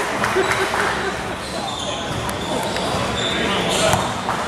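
A basketball bouncing on a gym floor, with the knocks of the bounces over indistinct voices of players and spectators, all sounding in a large gym hall.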